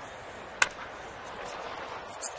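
A wooden baseball bat cracks once against a pitched ball about half a second in, a single sharp crack with a short ring. A steady murmur from the ballpark crowd runs underneath.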